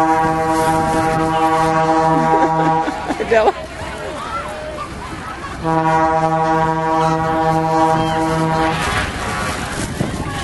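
A horn gives two long, steady blasts on a single low note. The first is held until about three seconds in, the second from about six to nine seconds in. Voices chatter between them.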